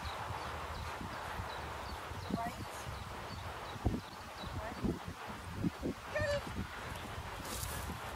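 Open-air ambience with a steady hiss and scattered low thumps. A faint, distant voice is heard briefly, clearest about six seconds in.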